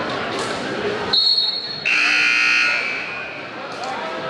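Gymnasium scoreboard buzzer sounding once for under a second, about two seconds in, signalling a substitution. A brief high tone comes just before it, and gym murmur with a ball bounce fills the rest.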